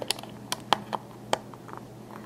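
Small hard-plastic clicks and taps from fingers handling a Lego minifigure and setting it on a Lego baseplate: a few sharp clicks at uneven intervals over a faint steady hum.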